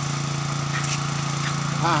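A small engine running steadily with a constant low hum.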